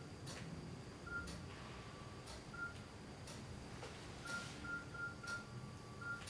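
Mobile phone keypad beeping as keys are pressed: short single-pitch beeps at irregular intervals, several in quick succession about four to five seconds in. Faint regular clicks about once a second run underneath.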